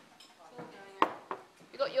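Two short knocks of a spoon against a mixing bowl while burger mince is stirred, the first sharp and loud about a second in, the second fainter just after.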